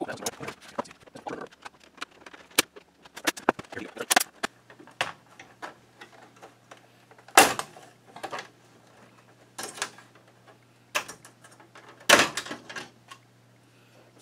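Plastic snap-fit clips of an LCD monitor's front bezel clicking and cracking as the frame is pried apart by hand: a string of sharp snaps, with the two loudest cracks about halfway through and near the end.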